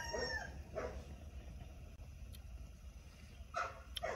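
A dog giving a few short barks, a couple in the first second and another near the end.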